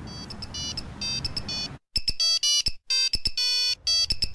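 A flip phone playing a tinny ringtone-style melody of short electronic beeping notes. It is faint at first and louder from about halfway through.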